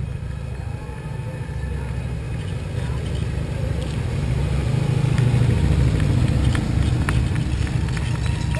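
Two large touring motorcycles riding slowly past. Their low engine rumble grows as they approach and is loudest about five seconds in.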